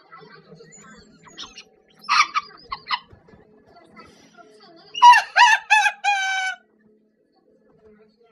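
A rooster crowing once, about five seconds in: three short, gliding notes and then a longer held final note. A few shorter, rougher calls come around two to three seconds in.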